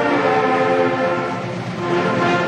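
School band playing long held brass chords, easing briefly before a new chord near the end.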